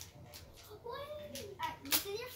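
Clicks and snaps of a plastic Rainbowcorns surprise-egg toy being handled and pried open, the sharpest snap coming near the end. A child's voice rises and falls briefly in the middle.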